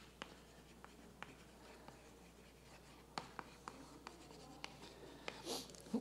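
Chalk writing on a blackboard: faint taps and short scratchy strokes as letters are formed, with a pause of about a second in the middle.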